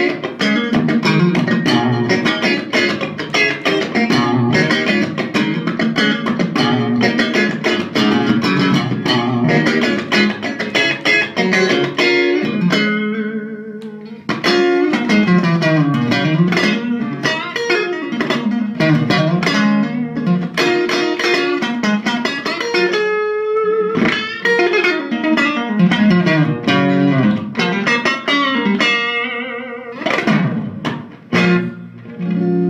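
Electric guitar played through an ATT Little Willie 15-watt all-tube amp with two 8-inch speakers, with no effect pedal in the chain: a Nick Page thinline Telecaster with Kloppmann '60 pickups on the middle pickup setting, amp bass and treble at noon. Busy picked lines and chords, easing off briefly around 13 seconds, with a held bent note near 23 seconds.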